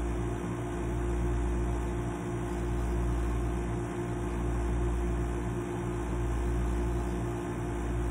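A steady mechanical hum with a deep low throb that swells and fades about every second and a half to two seconds, like a running fan or air conditioner.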